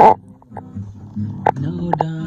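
A loud, short burst of sound right at the start, then quieter voices, and an acoustic guitar strummed from about a second and a half in.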